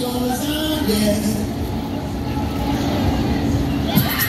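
A lull in the ride's dance music: a voice over the loudspeaker over the low, steady running noise of a spinning Break Dance fairground ride.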